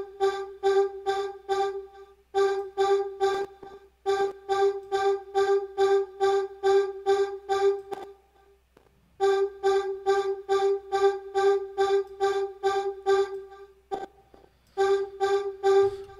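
Vocal-sample synth patch (the Art of Voice preset) repeating a short chorused note on G, about four notes a second, in phrases broken by brief gaps while its volume envelope is being reshaped.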